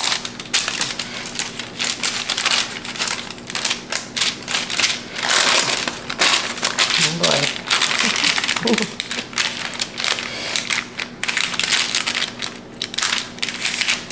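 Silicone spatula spreading soft dough over parchment paper on a baking sheet: irregular crinkling and rustling of the paper and scraping of the spatula.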